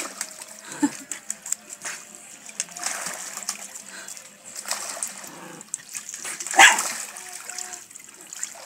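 Dogs swimming in a small backyard pool, the water sloshing and splashing as they paddle, with one sharp, louder sound about six and a half seconds in.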